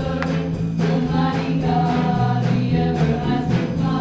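Live gospel worship music: several singers in harmony over a band of drums, guitars and keyboard, with a steady beat.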